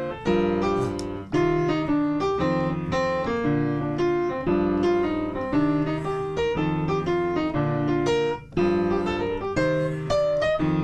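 Piano playing jazz: the left hand plays two-note shell chords through a I–VI–II–V progression in B-flat (B-flat major 7, G minor 7, C minor 7, F7), while the right hand improvises lines from the B-flat major scale over them. The low chords change about once a second under quicker right-hand notes.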